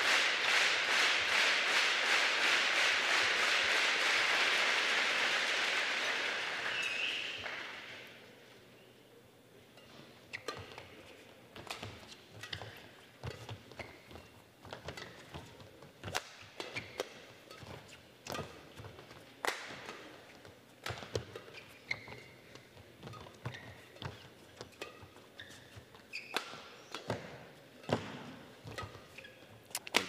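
Crowd applause with rhythmic clapping, dying away about seven seconds in. Then a badminton rally: sharp racket strikes on the shuttlecock roughly every second, with footsteps on the court between them.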